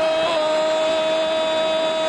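A male commentator's long, unbroken goal shout held on one high, steady note, over crowd noise, marking a goal just scored.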